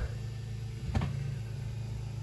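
A steady low machine hum, with two light knocks: one at the start and one about a second in.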